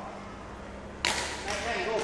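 A single sharp crack of a badminton racket striking a shuttlecock about a second in, ringing briefly in the large hall, with faint voices after it.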